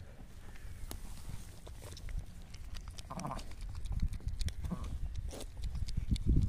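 A sheep calling twice with short, soft bleats, about three seconds in and again a second and a half later, beside a ewe and her newborn lamb.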